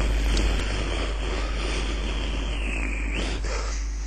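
Steady hiss with a low hum underneath, with no voice or music.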